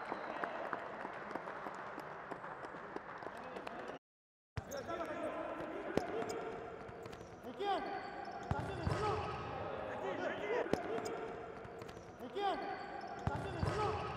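A futsal ball being kicked and bouncing on a hard indoor court, with scattered sharp knocks and players shouting in an echoing hall. The hall noise fades over the first few seconds, the sound drops out briefly about four seconds in, and the shouting picks up in the second half.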